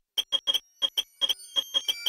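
Experimental electronic music: about a dozen short, high beeps in an uneven, stuttering rhythm. Held tones come in underneath about three-quarters of the way through.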